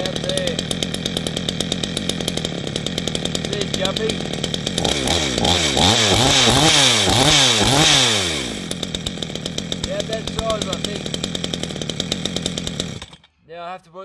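A 62cc two-stroke chainsaw with a modified single-port muffler exit idles, then is revved up and down five or six times in quick succession before settling back to idle. Its carburettor's high and low needles have not yet been retuned for the opened exhaust. The engine cuts off suddenly near the end.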